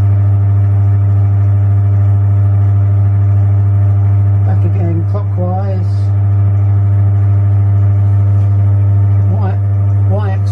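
Milling machine running steadily with a strong, even low hum, its spindle turning a hole centre finder in a bore.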